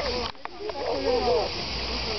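Indistinct voices talking over a steady hiss, with a brief dropout in the sound just after the start.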